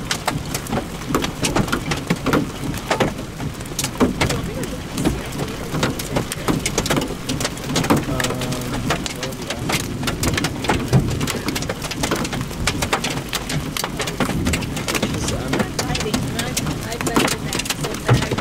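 Golf-ball-sized hail pelting down: a dense, irregular clatter of sharp knocks over a steady rain-like hiss.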